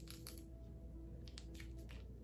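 Faint music with a few held notes. Over it come a few faint soft clicks as a small plastic conditioner sachet is squeezed between the fingers.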